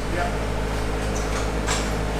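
Steady, unchanging low machine hum with a few faint background voices.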